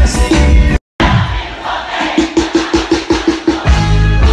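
Loud live band music with heavy bass and a large crowd, cut off abruptly just under a second in. After a brief silence the crowd is heard with a fast repeated note, and the full band with bass comes back near the end.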